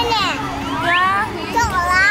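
A young child's high-pitched voice, rising sharply into a squeal about a second in.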